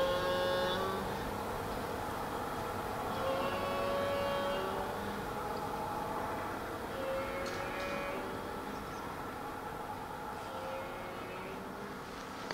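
Black bear's death moan: drawn-out, mournful calls about every three seconds, each a second or so long and slowly growing fainter. It is the sign of a bear fatally hit by an arrow.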